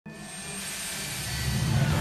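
A swelling whoosh of noise that grows steadily louder, with a low rumble building in over the second half: a soundtrack riser or rumble effect in an animated cartoon.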